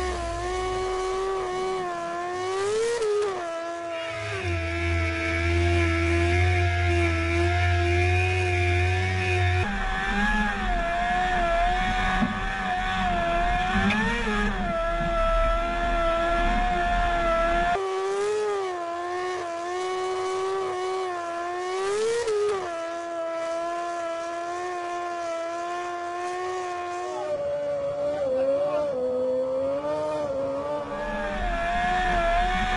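Formula One car's engine held at steady high revs under load against a rugby scrum machine, with short blips of the revs about 3, 14 and 22 seconds in.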